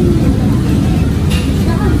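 Steady low rumble of restaurant background noise, with faint voices in it.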